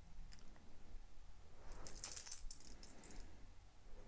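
Metal tags on a dog's collar jingling for about a second and a half, a little under two seconds in, with a couple of faint clicks before.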